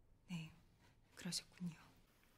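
A woman speaking quietly in Korean: a few short words, in two brief phrases with pauses between them.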